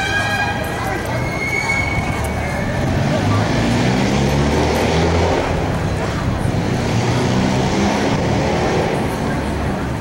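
Background voices of people talking, over a steady wash of outdoor noise.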